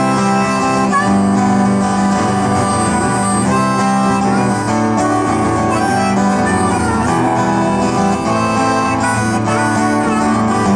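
Hohner harmonica played in a neck rack, carrying the melody in held notes over a strummed Martin DCX1E acoustic guitar.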